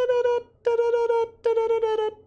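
A man's voice singing three held high notes on the same pitch, each cut short by a brief gap, imitating the song's high-pitched line.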